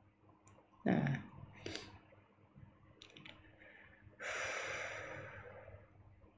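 A man breathing audibly in a pause between sentences. About a second in there is a short low sound from the throat, then a few faint clicks, then a long breathy hiss of about a second and a half, fading out.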